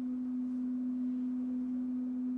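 A steady, single-pitched low electrical tone that holds one pitch without change.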